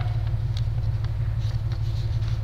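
A steady low hum, loud and unchanging, with faint rustles of paper sheets being handled and sorted.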